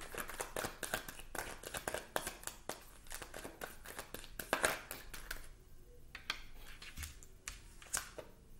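Tarot cards being shuffled by hand: a rapid run of papery clicks and snaps for about five seconds, then quieter, with a few soft taps near the end.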